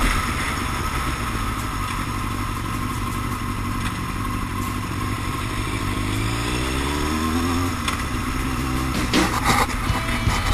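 Yamaha R1's inline-four engine running at low revs through town, with wind rush on the microphone. About six seconds in the revs climb for a couple of seconds as it pulls away, then drop back. There are a few short knocks near the end.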